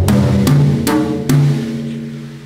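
Tom-toms on a drum kit struck one at a time with sticks, four strokes at different pitches, each ringing. The last is left to ring out and fade.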